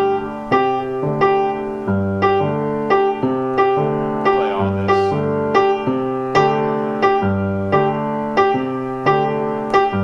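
Grand piano playing a steady, repeating left-hand jazz ostinato: a note or chord struck about every 0.6 s, in a pattern that comes round again about every two seconds.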